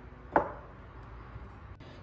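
A drinking glass knocks once against a hard surface about a third of a second in, with a faint click near the end.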